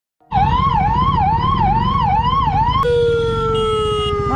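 Ambulance boat's electronic siren sounding a rapid rising-and-falling warble, about two cycles a second, then switching about three seconds in to one long tone that slowly falls in pitch, over a steady low rumble.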